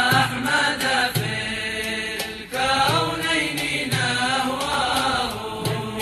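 A sung religious chant in the style of an Islamic nasheed, one melodic voice gliding between notes, over a low drum beat about once a second.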